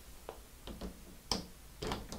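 Light clicks and taps of a 1.9-inch RC crawler wheel with an aluminium rim being handled and fitted onto the model's axle hub; about five small clicks, the loudest about two-thirds of the way through.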